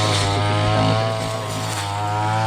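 Petrol backpack brush cutter running steadily while cutting tall grass.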